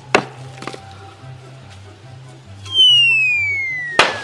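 A knock just after the start, then, about two and a half seconds in, a loud cartoon falling-whistle sound effect: one long tone sliding steadily down in pitch, over background music with a stepping bass line.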